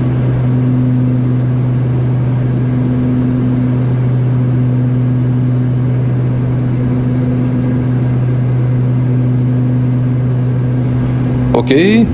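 Cockpit noise of a Beechcraft King Air's twin turboprops in the climb: a steady, loud drone of engines and propellers with a constant low hum tone.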